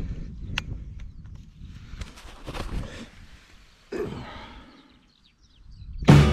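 Wind rumbling on the microphone, with sharp clicks and rustles of a tripod-mounted pinhole camera being handled and turned. It fades almost to silence near the end.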